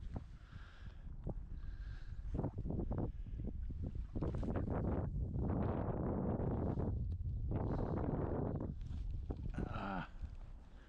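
Wind rumbling on the camera microphone, heaviest through the second half, with a few knocks in the first half.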